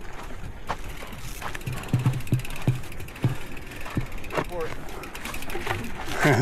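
Mountain bike being pushed over a rocky trail: tyres and frame knocking on the rocks, with several thumps about two to three seconds in and the rear freehub ratchet clicking as the wheel rolls.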